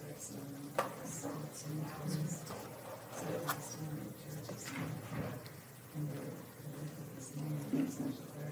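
Indistinct chatter of people talking in a room, too faint to make out, with a single click about a second in.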